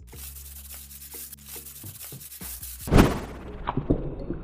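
Small paint roller rolling wet paint across a flat board: a steady rasping rub. About three seconds in there is one loud thump.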